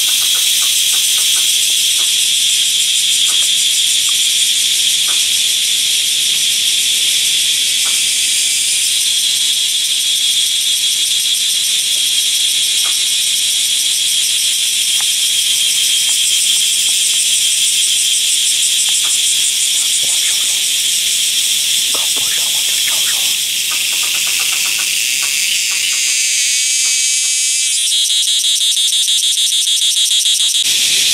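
Loud, steady high-pitched buzzing chorus of forest insects, typical of tropical cicadas. Near the end a fast-pulsing insect call joins in.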